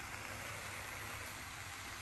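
Water boiling in a paper pot on an electric hot plate: a faint, steady hiss.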